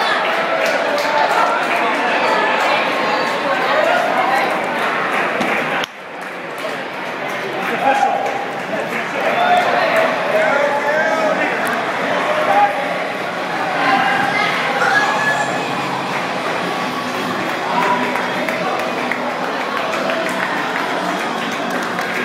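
Crowd chatter: many people talking at once, echoing in a large enclosed concourse.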